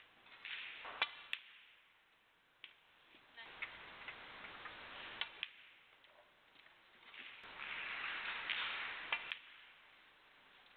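Snooker balls clicking as shots are played: several sharp clicks, mostly in pairs a fraction of a second apart, three times, over a soft hiss of the hall.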